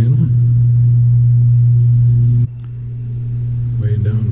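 A loud, steady low hum that drops suddenly in level a little past halfway, then slowly builds back.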